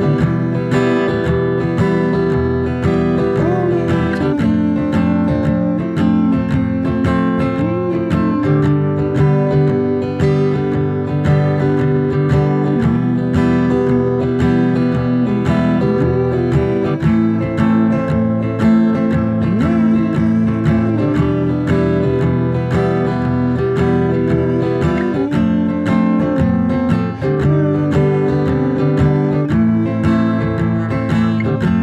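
Acoustic guitar strummed steadily in a continuous rhythm, working through a simple open-chord progression (C, Em, F, G, Am).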